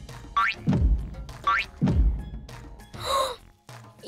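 Cartoon sound effects of a heavy egg hopping: a short rising boing-like whistle, then a deep, heavy thump as it lands, twice about a second apart. A short wobbly tone follows near the end, over children's music.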